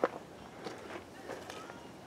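Soft, faint footsteps on dry ground as a person walks a few paces, with light outdoor background noise.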